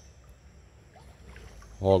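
Faint outdoor background with a low, even rumble, then a man's voice starting near the end.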